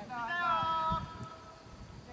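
A player's long, high-pitched shout on the pitch, held for about a second and then breaking off.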